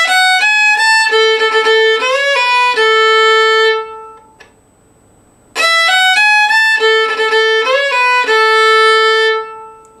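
Solo fiddle playing the same short Irish reel phrase twice, with a pause of about a second and a half between, bowing through different slurring variations. A lower note is held ringing under the moving melody notes in each phrase.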